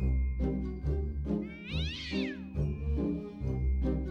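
Background music with a single cat meow about two seconds in, rising and then falling in pitch.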